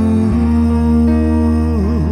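Music from a rock song: a male singer holds one long note over sustained bass and chords, and the pitch wavers near the end.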